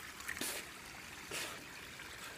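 Water trickling and running from a small mountain waterfall, with two brief louder bursts of noise about half a second and a second and a half in.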